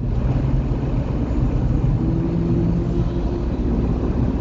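A motorcycle overtaking a car from behind, its engine note heard from inside the car over steady road and tyre rumble, the engine tone clearest in the middle of the pass.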